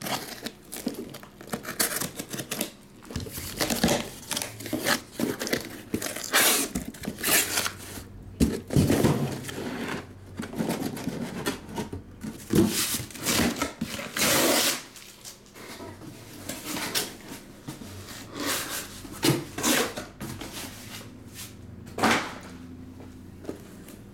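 Utility knife slitting the packing tape on a cardboard case, then tape tearing, cardboard flaps and shrink-wrapped card boxes being pulled out, slid and set down, in irregular scrapes, rips and rustles.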